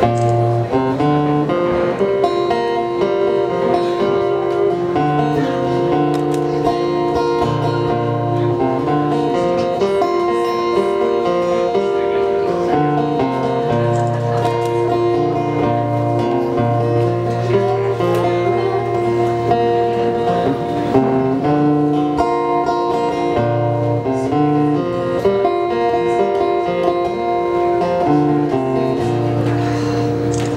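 Steel-string acoustic guitar playing an instrumental introduction: a repeating chord pattern over a moving bass line, held at an even level.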